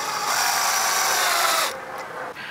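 DeWalt cordless drill spinning a Gator Grip universal socket to drive a white-coated screw hook into a wooden board. The motor whine rises slightly as it spins up, holds steady, and cuts off shortly before the end.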